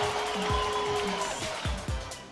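Background music with a steady electronic beat, low kick-drum thuds a little under twice a second under a held tone.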